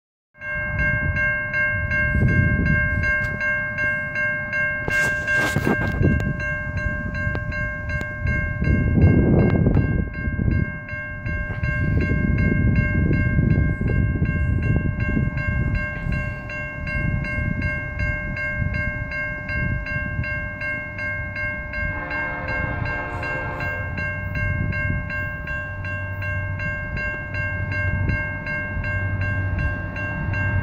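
Level-crossing warning bell ringing steadily as a CN freight train runs past with a low rolling rumble.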